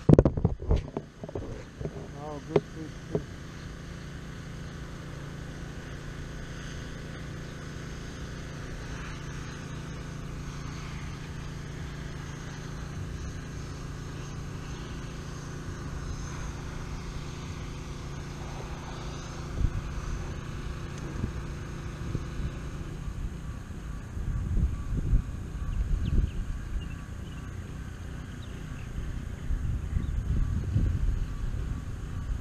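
Kayak's motor running with a steady hum as the kayak moves off, after a few knocks of gear being handled at the start. The hum stops a little over twenty seconds in, leaving wind rumbling on the microphone.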